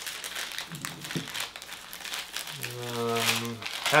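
Packaging of a Funko Soda crinkling and rustling in the hands as the figure is pulled out of it. A man's short held hum sounds about two-thirds of the way through.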